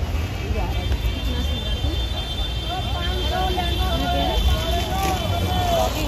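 Busy street-market background: indistinct voices talking over a steady low rumble.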